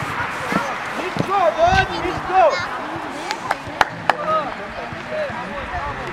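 High-pitched shouts and calls of young footballers on the pitch, with a few sharp knocks of the ball being kicked around the middle.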